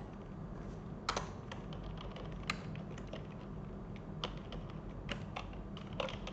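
Typing on a computer keyboard: irregular, scattered key clicks, a few stronger taps among lighter ones, over a low steady background hum.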